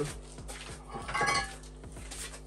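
A short metallic clink and rattle about a second in, as the steel intermediate shaft of a Land Rover LT230 transfer case is picked up among metal parts.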